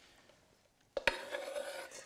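A knife scraping chopped red onion and dill off a wooden cutting board into a stainless steel bowl: a rasping scrape that starts suddenly about a second in, after a near-silent moment.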